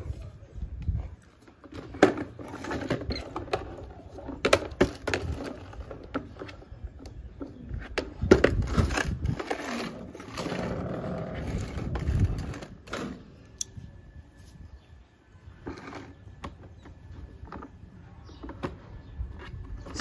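Plastic spin-mop bucket being handled and shifted on a tiled floor: scattered knocks and clicks, with a few seconds of continuous rattling noise around the middle.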